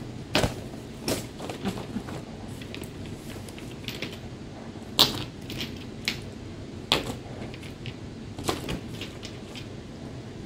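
Rummaging through a shopping bag: irregular rustling with sharp crinkles and clicks as the bag and small packaged items are handled. The loudest snaps come about five and seven seconds in.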